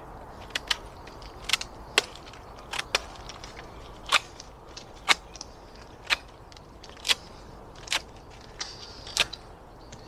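Stainless steel blade of a Fiskars utility knife whittling a stick, each stroke slicing a chip off the wood with a short sharp snap, about once a second.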